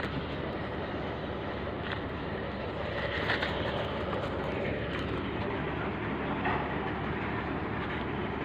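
Steady, even running noise from heavy machinery on a mine site, with a few faint knocks.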